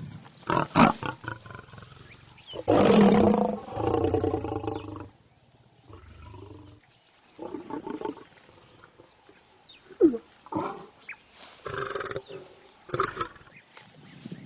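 A lion vocalizing with deep, drawn-out calls. The loudest comes about three seconds in and a second follows straight after it. Shorter, quieter calls come later.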